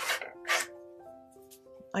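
Two brief rustles about half a second apart, paper being slid and smoothed by hand on a plastic scoring board, over soft background music of held piano-like notes.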